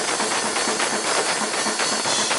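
PDP acoustic drum kit played fast in a death-metal blast beat: rapid snare and bass drum strokes under a dense wash of cymbals.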